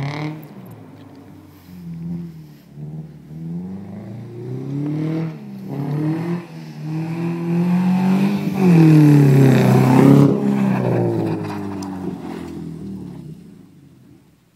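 Subaru Impreza's flat-four boxer engine revving in several rising sweeps on the approach, loudest as the car passes about nine seconds in, then dropping in pitch and fading away. The owner says the engine is running far too rich and down on power because its rear O2 sensor is out of the exhaust pipe.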